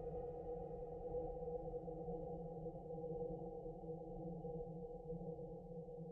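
Quiet ambient passage of electronic music: a steady synthesizer drone with a held tone in the middle range over a low rumble, and no beat.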